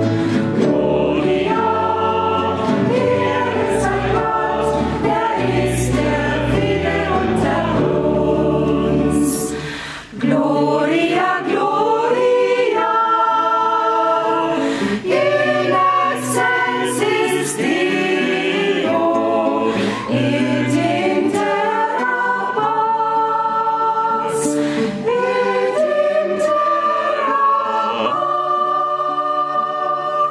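Church choir singing a hymn in several voices, with organ accompaniment holding sustained low notes in the first part. About ten seconds in there is a brief drop, and the singing then carries on with the low notes much thinner.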